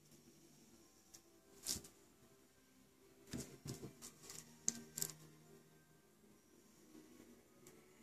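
Quiet room with a few faint clicks and taps from handling an acrylic nail brush on a nail form, one just under two seconds in and a cluster between about three and five seconds in. Faint music sits underneath.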